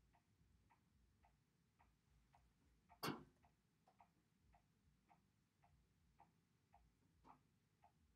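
Near silence with faint, regular ticking, about two ticks a second, and one sharper click about three seconds in.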